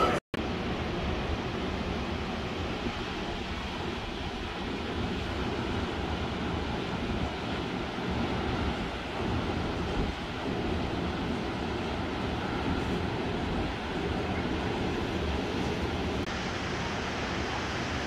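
Steady wind rushing over the microphone, mixed with the wash of surf breaking along the shore.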